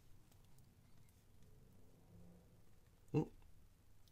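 Quiet room tone with a few faint small metallic clicks as fingers work at the split pin on the back of a small brass wafer lock cylinder, followed by a short spoken word near the end.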